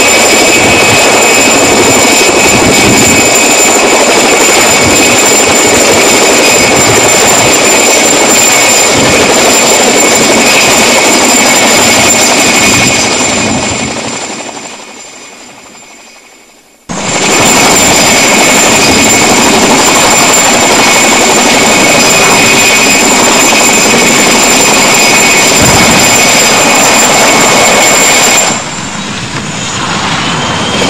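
Helicopter turbine engine running: a loud, steady roar with a high whine. It fades away around the middle, cuts back in suddenly, and drops in level briefly near the end.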